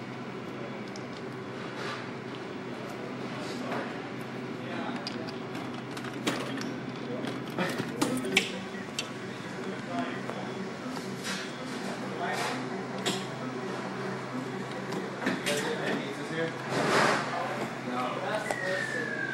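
Claw crane machine being played: a steady machine hum with scattered clicks and knocks from the claw and controls, and background voices in a public room. There is a louder burst of noise near the end, as the claw lifts a plush.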